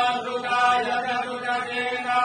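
Hindu priests chanting Sanskrit mantras in a steady, continuous drone of held voices during temple worship at the Shiva lingam.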